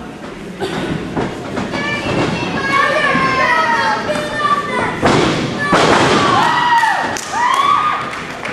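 Wrestlers' bodies and feet thudding on the wrestling ring's canvas, several hits, the heaviest a few seconds in, with yelling voices over them.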